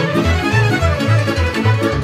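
Romanian folk music from a lăutari orchestra: a lead violin over a regular beat in the bass.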